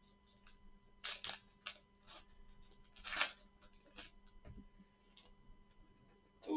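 Wrapper of a Panini Prizm Draft Picks football card pack being torn open and crinkled: a string of short, faint crackling tears, the loudest about three seconds in.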